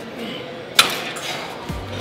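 One sharp metal clank with a short ring about a second in, the sound of a gym machine's steel weight-stack plates knocking together, over background music.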